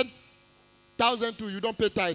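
A steady electrical mains hum during a pause of about a second, after which a man's voice resumes speaking.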